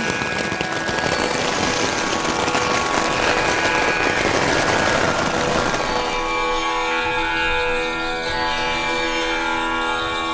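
Hail and rain pelting a tent's fabric wall, a dense steady patter, with music fading in beneath it; about six seconds in the patter gives way to the music alone, sustained pitched notes.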